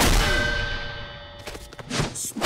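Cartoon fight sound effect: a sharp metallic clang of weapons striking, ringing out and fading over about a second. A few quick clicks follow, then another hit near the end.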